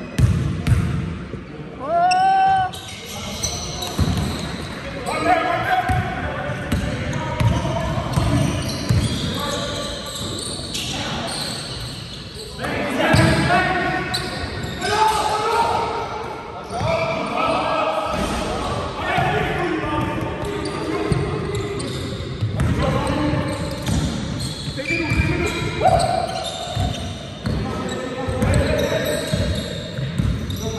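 A basketball bouncing on a sports-hall floor in repeated knocks, with players' voices calling across the echoing hall during a game.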